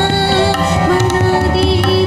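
Live Indian-style ensemble music: tabla strokes, with the deep bass drum booming, over sustained harmonium and keyboard notes and a wavering melody line.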